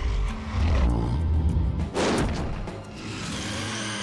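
Dramatic cartoon score over a giant monster shrew's sound effects: a deep, rumbling growl in the first second or so, then a sudden loud, harsh burst about two seconds in.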